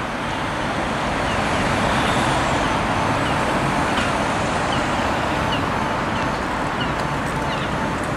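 Steady city road traffic: cars and other vehicles passing through an intersection, the noise swelling slightly about a second in and holding.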